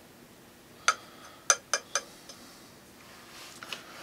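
A wooden stir stick knocking against a small metal can of stain: four short clinks with a faint ring, between about one and two seconds in, over quiet room tone.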